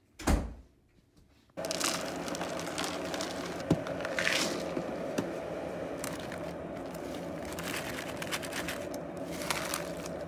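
A thump near the start. Then, about a second and a half in, crinkling plastic packaging and scattered light clicks begin as frozen raspberries are tipped from their bag into a bowl, over a steady background hum.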